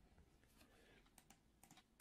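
Near silence with a few faint, short computer keyboard clicks, spaced irregularly, about a second in and near the end.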